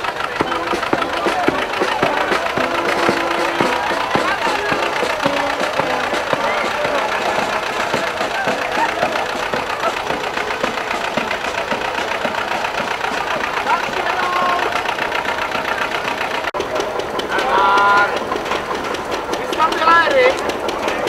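Old farm tractor engine running steadily, with the chatter of a crowd of people over it.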